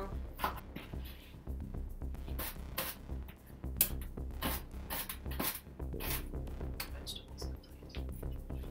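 Knife chopping potatoes and celery on a cutting board: a quick, irregular run of sharp knocks, over background music.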